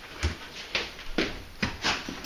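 Explosive detection dog sniffing along the floor as it searches for scent: about five short, sharp sniffs at uneven intervals.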